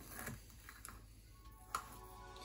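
Faint background music, with a few light clicks of a table knife against a plastic tub as it cuts through set gelatin fish food.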